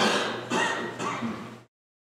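A man's voice close to the microphone, three short loud bursts, then the audio cuts off abruptly into total silence.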